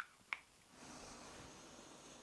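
A short click, then a faint, steady inhale through the nose lasting about a second and a half: a person sniffing a perfume test strip.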